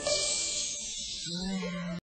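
A long 'shh' hush that fades out after about a second. Near the end, a low held note comes in.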